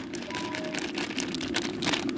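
Ground masala paste frying in oil in a steel pot, with irregular crackles over a steady low hum.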